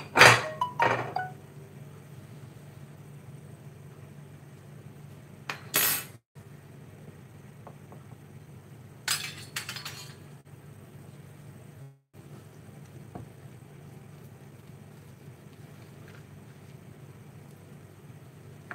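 Crockery and a metal serving spoon clinking and knocking as dishes are moved and a pie is served. A few sharp clinks come at the start, a louder clatter about six seconds in and more clinks around nine seconds, over a steady low hum.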